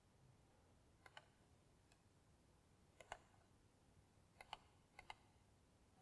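Near silence broken by a handful of faint computer mouse clicks, most of them in quick pairs, as selections are made in dropdown menus.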